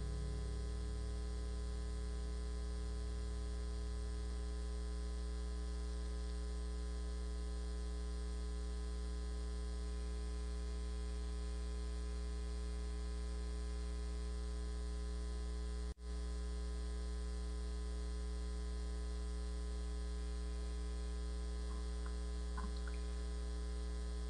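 Steady electrical mains hum with its stack of harmonics, coming through the broadcast's sound system while no one is at the microphone. The hum cuts out for a split second about two-thirds of the way through.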